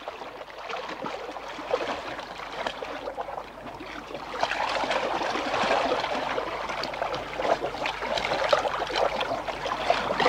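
Water splashing and lapping around a rowing boat, growing louder about four and a half seconds in.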